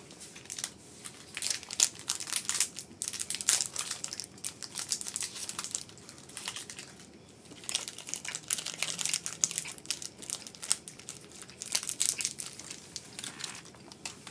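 Wrappers of individually wrapped mochi snacks crinkling and rustling as they are unwrapped by hand, in two long stretches of dense crackling with a short lull about halfway through.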